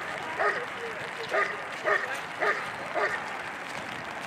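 A German shepherd dog barking steadily at a helper in a bite suit, about two barks a second, in an even rhythm. This is the hold-and-bark of IGP protection work: the dog guards the helper with constant barking instead of biting.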